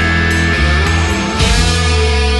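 Loud rock music, dense with distorted electric guitar and bass. About one and a half seconds in, a new chord is struck and rings on.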